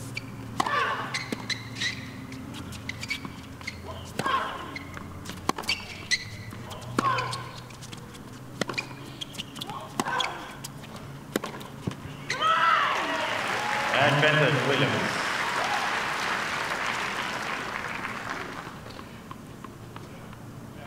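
Tennis rally: the ball is struck back and forth with sharp racket pops about every second and a half, some shots with a loud grunt from the player. About twelve seconds in, the point ends and the crowd applauds and cheers, dying away near the end.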